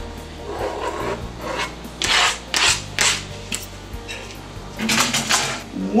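Knife blade scraping chopped jalapeño across a plastic cutting board into a bowl, in a series of short scraping strokes, the loudest near the middle and again near the end.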